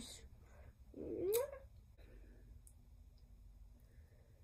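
A Shetland sheepdog gives one short call that rises in pitch, about a second in.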